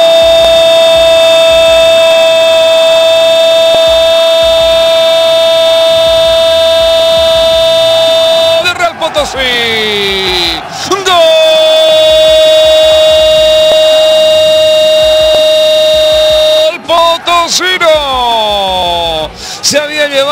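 Spanish-language football commentator's long drawn-out goal cry, "Goool", held on one steady pitch for about eight and a half seconds. The voice slides down, is held again for about five more seconds, and breaks into short shouted words near the end.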